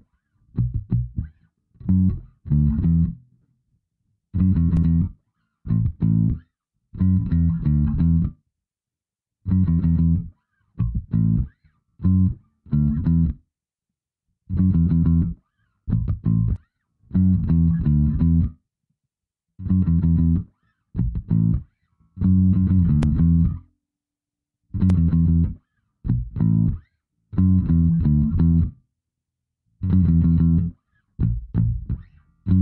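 Solo bass guitar playing a simple hip-hop bassline by ear, in short phrases of plucked low notes with stops of silence between them and no backing track.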